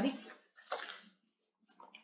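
A voice finishing a spoken word, then a short soft rush of noise about three-quarters of a second in and a faint murmur near the end, with near silence between.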